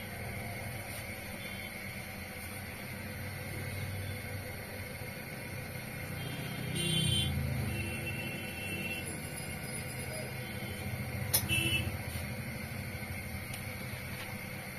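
A nose-piercing gun snapping once, about eleven seconds in, as it fires a stud through the side of the nose. Under it runs a steady low rumble that swells briefly about halfway through.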